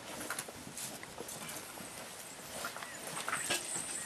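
Scattered footsteps and small knocks as people move about, irregular and not very loud, over a faint room background.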